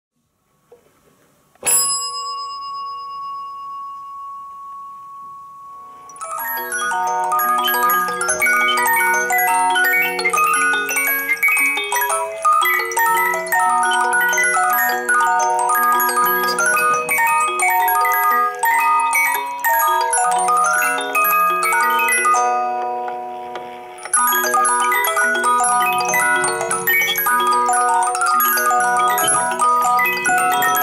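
A single strike of a metal dome bell, ringing out with a wavering fade over about four seconds. Then a six-air cylinder music box plays a tune of bright plucked comb notes, with a short break about three-quarters of the way through before it carries on.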